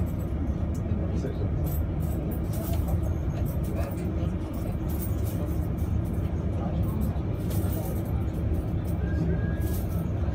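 Steady low rumble of a tour boat's motor, heard from inside its glass-roofed cabin while under way, with indistinct voices around.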